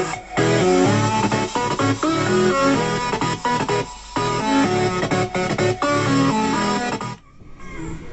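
Instrumental music played back from a cassette through a 1990s Sharp boombox's speakers, a test recording made through its newly added AUX input; it sounds clean. The music stops abruptly about seven seconds in.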